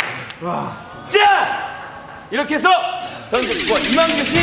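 Men's voices shouting short cheers and exclamations such as "fighting!" in a large hall. Near the end, an edited-in TV sound effect begins: a fast run of clicks with falling tones, leading into music.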